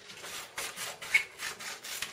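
Scissors cutting through a sheet of paper in a quick run of snips, with a sharper click about a second in.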